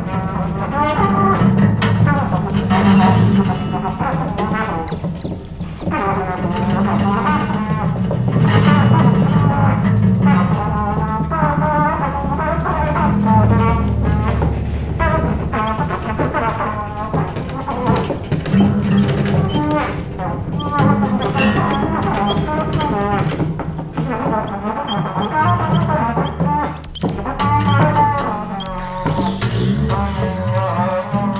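Free jazz: a trumpet plays an improvised line full of wavering, bending notes over low sustained bass notes, with faint high electronic tones in the second half.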